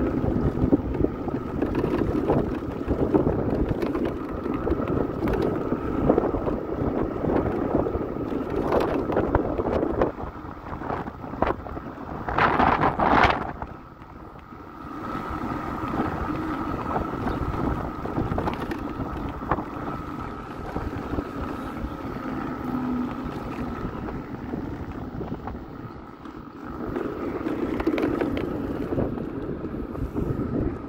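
Mondial E-Mon Rigby electric scooter riding along: wind buffeting the microphone and tyre noise over paving stones, with a faint steady whine underneath. A brief louder burst comes about halfway through.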